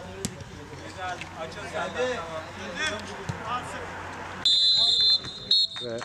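Referee's whistle blowing for full time: one long blast about four and a half seconds in, then a short second blast, over players' voices on the pitch.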